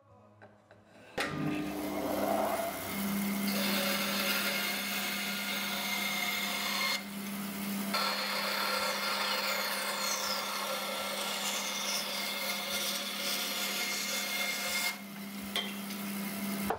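A bandsaw running and cutting a wooden block to size. It starts about a second in with a steady motor hum under the cutting noise, eases off briefly about seven seconds in, and quietens near the end as the cut finishes.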